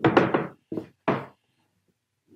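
Cast-aluminium kayak pedal drive knocking and clunking in its plastic hull mount as it is shifted to find the position where the prop clears the hull for lifting: a quick run of knocks, then two single knocks about a second in.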